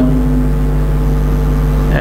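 Loud steady low hum with several fixed tones, unchanged throughout.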